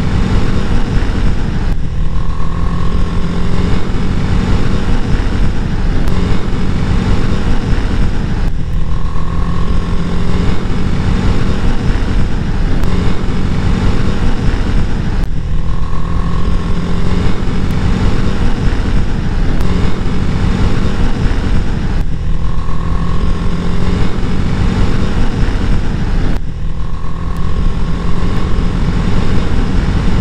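A motorcycle engine running at a steady cruise under heavy wind rush on the microphone, heard from the rider's seat. The same stretch of sound repeats about every six to seven seconds.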